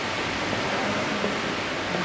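Steady rushing background noise with a faint low hum, with no distinct sound standing out.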